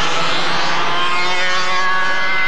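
Several quarter-scale radio-controlled race cars' small two-stroke gasoline engines running at high revs together, a steady blend of buzzing engine tones that drift slightly in pitch as the cars race flat out after the green flag.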